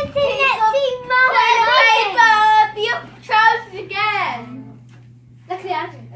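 A child's high sing-song voice: several sung or chanted phrases with sliding pitch, dying away about four and a half seconds in. A steady low hum comes in about a second in and runs on underneath.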